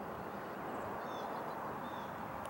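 Steady outdoor background noise, even and without distinct knocks or steps, with a few faint high chirps about a second in and near the end.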